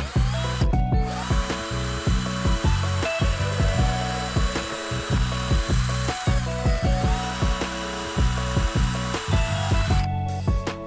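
Metabo cordless drill boring a hole through a composite decking board. The motor whine rises as it spins up about a second in, drops away around six seconds, then picks up again a second or so later. Background music plays underneath.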